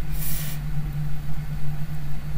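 Steady low hum of background noise, with a short hiss in the first half-second.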